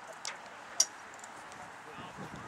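Outdoor ambience with faint, distant voices, and a single sharp click a little under a second in.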